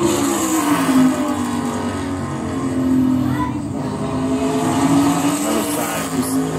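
NASCAR Cup Series V8 race engine on a qualifying lap at high revs, its pitch easing slightly as the driver lifts into a turn and then holding, heard through a TV's speakers.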